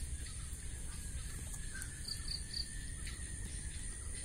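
Three short, high bird chirps in quick succession about two seconds in, over a steady high-pitched insect drone and a low rumble.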